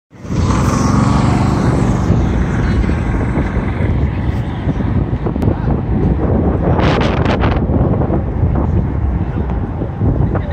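Semi-truck diesel engine running steadily, with a low heavy rumble throughout. A short burst of hissing comes about seven seconds in.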